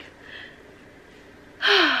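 A woman sighs near the end: a loud breathy exhale with a voiced tone that slides down in pitch.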